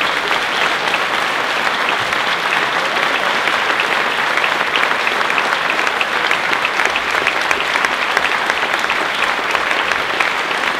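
Concert hall audience applauding steadily, many hand claps blending into a dense, even patter.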